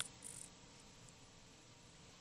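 Near silence: room tone, with one short click at the very start.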